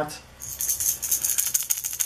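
Vicious VXV lipless crankbait shaken by hand, its internal rattles clicking rapidly, starting about half a second in.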